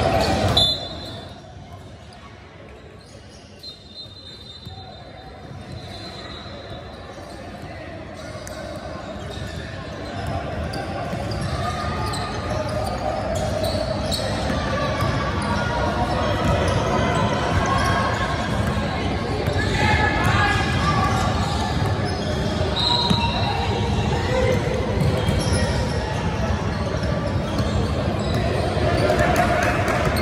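Basketball game sounds in a large, echoing gym: a ball bouncing on the hardwood court, with players and spectators calling out. It drops off sharply within the first second, stays quieter for several seconds, then grows busier and louder from about ten seconds in.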